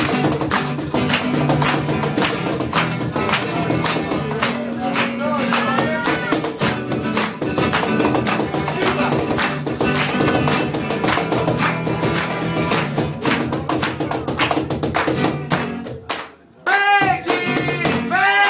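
Acoustic guitar strummed in a fast, driving rhythm with a cajón slapped along with it. Just after sixteen seconds the playing drops out briefly, and then a voice comes in.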